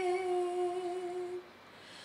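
A girl singing unaccompanied, holding one long steady note that fades out about one and a half seconds in, followed by a brief pause for breath.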